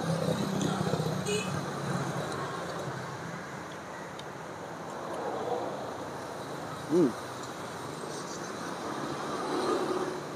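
Passing road traffic: a vehicle's steady engine hum fades away over the first few seconds, then more traffic swells and fades twice. A man gives one short appreciative "hmm" while eating, about seven seconds in.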